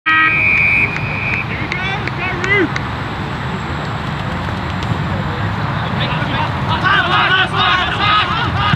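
A siren sounds one steady note for just over a second as play starts at an Australian rules football match, followed by steady wind on the microphone and shouting voices of players and spectators, busiest near the end.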